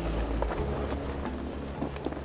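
Wind rumbling on the microphone, with soft held notes of background music beneath it and a faint tap near the end.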